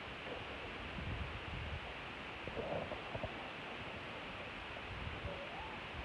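Faint clucks from hens, a few short calls in the middle and one rising call shortly before the end, over a steady hiss and soft low rumbles of handling on the microphone.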